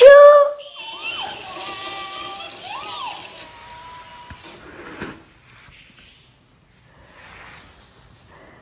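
A high-pitched cartoon voice cries "Pikachu!" right at the start. About three seconds of softer squeaky, gliding voice sounds follow and fade out, leaving faint room noise.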